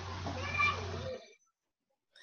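Steady low hum and hiss from an open microphone on a video call, with a brief faint pitched sound about half a second in. The noise cuts off abruptly a little past a second in, as the call's audio gates to silence.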